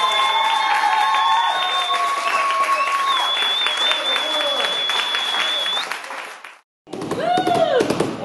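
A sung high note held for about six seconds while a small dinner audience claps and calls out, the applause starting about a second in. The sound drops out briefly near the end, then singing starts again.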